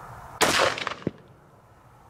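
A single rifle shot about half a second in, its report dying away over about half a second, then one sharp click.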